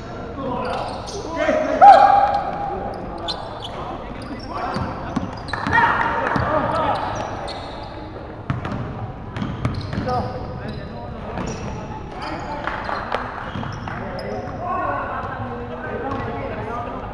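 A basketball bouncing on a wooden gym floor, mixed with players' shouts and calls. The loudest moment is a shout about two seconds in.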